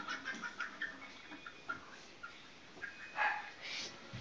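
A dog whining faintly in short high-pitched bits, with one louder sound, likely a yelp, a little past three seconds in.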